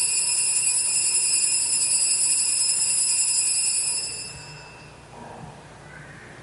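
Altar bells rung at the elevation of the chalice, marking the consecration of the wine. A bright, high, steady ringing that dies away about four and a half seconds in.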